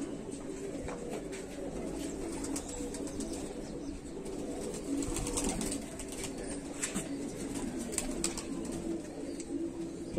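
Domestic pigeons cooing steadily, low-pitched, with a few faint clicks.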